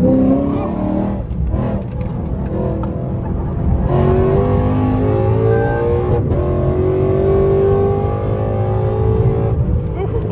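Lexus RC F's V8, fitted with headers, accelerating hard, heard from inside the cabin. The engine note climbs in pitch in several runs with short dips between them as it shifts up, and gets louder from about four seconds in.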